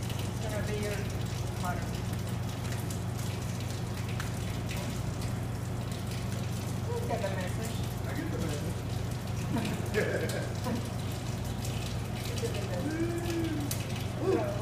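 A kitchen tap running steadily into a stainless steel sink, with a steady low hum beneath it.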